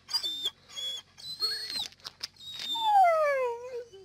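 Dog whining to be let in: a few short high-pitched whines, then about three seconds in a long, loudest whine sliding down in pitch.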